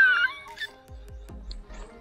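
A loud, high-pitched wavering cry, heard as meow-like, that glides downward and dies away about half a second in. Faint low knocks and quieter sounds follow.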